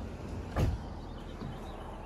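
A single dull thump about half a second in, over a steady low outdoor background.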